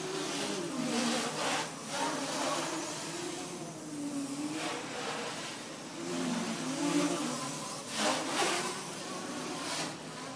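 Armattan 290 quadcopter's motors and propellers buzzing in acrobatic flight, the pitch rising and falling as the throttle changes, with a few short rushes of noise.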